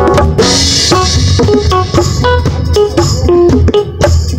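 Live band music: LP City bongos played with the hands close to the microphone, over a drum kit, a steady bass line and pitched melodic instruments.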